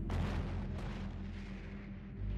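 A sudden artillery-like explosion at the start that fades away over about a second, with a second, smaller report just under a second in, over a steady low music drone.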